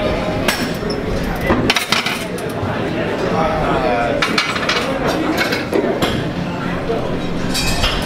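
Metal clanks of a loaded barbell and its weight plates knocking against the steel bench-press rack, several sharp hits spread over a few seconds, as a failed bench press is racked with a spotter's help. Voices can be heard among the hits.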